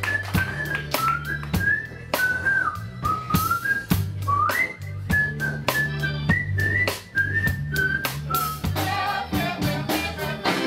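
A person whistling a melody of short held notes and quick upward glides over a live jazz band's bass line and drums. Near the end a singing voice comes in.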